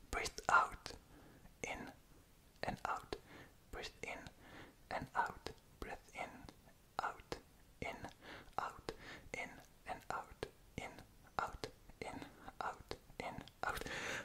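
A man whispering softly in short, quick phrases, with small clicks between them.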